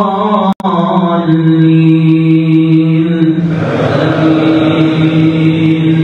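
A man's voice chanting Quranic recitation through a microphone and loudspeaker, in long held notes that shift in pitch only a little. About halfway through, a broader rush of sound joins under the held note, typical of many voices coming in together. A very brief dropout cuts the sound about half a second in.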